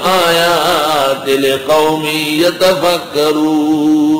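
A man's voice chanting in long, drawn-out melodic phrases, the held notes wavering in pitch, in the style of a devotional recitation.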